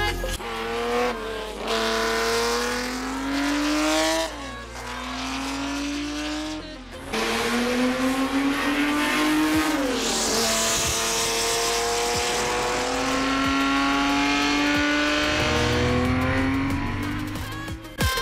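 Racing engine of a 1960s Ferrari 330 P3/4-type sports prototype pulling hard on a circuit: its pitch climbs again and again, broken by quick drops at each upshift about four and seven seconds in. About ten seconds in the pitch falls away as the car passes, and it runs on more steadily after that.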